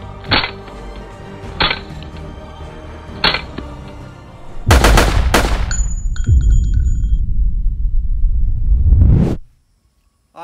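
Background music with three suppressed .22 pistol shots, sharp cracks about a second and a half apart. About halfway a heavy boom hits and the music swells into a loud logo sting with ringing chime tones, then it cuts off suddenly about half a second before the end.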